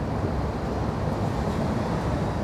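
Steady low rumbling outdoor street noise with no distinct events, typical of wind buffeting the microphone over distant traffic.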